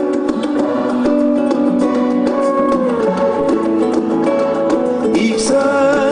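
Live band music: an instrumental passage between sung lines, a plucked-string melody with guitars over a steady drum and cymbal beat.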